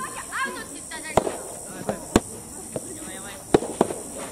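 Soft tennis rally: the hollow rubber ball struck by rackets and bouncing on the hard court, four sharp pops about a second apart, with brief voices in the background.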